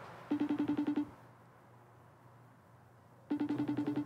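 Phone on speaker playing an outgoing call's ringback tone: two short trilling bursts about three seconds apart while the call waits to be answered.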